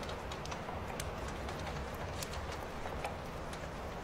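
Campfire crackling: irregular sharp pops and snaps, several a second, over a steady low rumble of burning.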